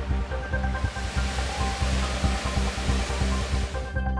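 Percussive background music with a steady beat, with the rush of water in a rocky stream building up over it and then cutting off suddenly at the end.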